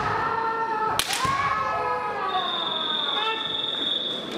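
Kendo competitors' kiai shouts, long and falling in pitch, with a sharp crack of a bamboo shinai strike about a second in. From a little past halfway a steady high-pitched tone sounds through to the end.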